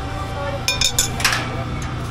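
Metal chains and steel restraint bar of a chain swing-ride seat clinking and rattling, with a few sharp clinks around the middle, over a low murmur of voices.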